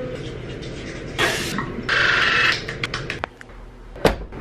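Electric toothbrush buzzing briefly about two seconds in, after a short burst of hiss, with a few light clicks following.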